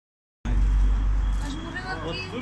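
Low rumble of a phone microphone being handled as recording begins, starting about half a second in and fading after a second, followed by people's voices.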